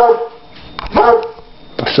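A dog barking indoors, three short barks about a second apart.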